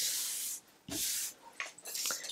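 Two short rustling swishes: a hand sweeping loose paper shred across a plastic cutting mat, the second about a second in.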